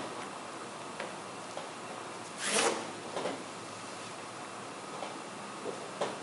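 Soft scuffs and small knocks of a person lowering herself onto a rubber gym floor mat with a kettlebell, with a louder scuffing rush about two and a half seconds in and a smaller one just after three seconds, over steady room noise.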